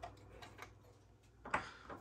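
Faint clicks and ticks of hands working at the wiring and connectors inside an open spectrum analyzer, with a short rustle about three-quarters of the way through, over a low steady hum.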